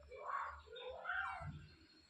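Rhesus macaque giving two short whining, meow-like calls, each bending up and down in pitch, the second a little longer.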